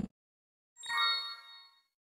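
A short electronic chime: a Windows system sound of several steady bell-like tones. It sounds once a little under a second in and fades within about three quarters of a second.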